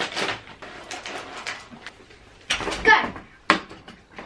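Rustling of a snack bag as chocolate stars are poured into a glass bowl, then a thud a little past halfway and a brief squeal of a voice. Near the end comes one sharp tap as a dart strikes the spinning mystery-wheel dartboard.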